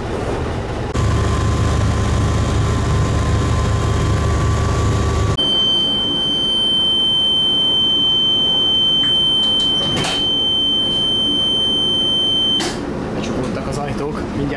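A train's door-closing warning sounds as one steady high beep lasting about seven seconds, cut off abruptly with a knock. Before it comes a loud low rumble of about four seconds from the motor train.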